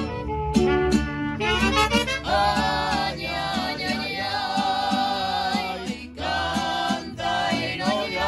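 A mariachi band playing live: a melody with vibrato over a steady, repeating bass and rhythm accompaniment.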